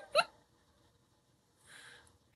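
Last short burst of a woman's laughter just after the start, then near silence with one faint breathy hiss near the end.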